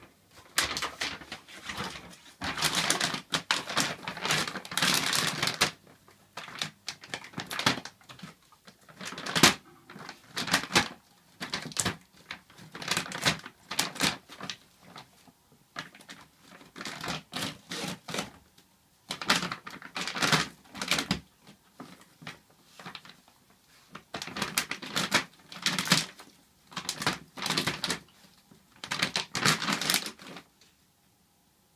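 Dalmatian tearing and chewing a plastic dog-food bag: crinkling, crackling rustles in irregular bursts, with a few quieter gaps between.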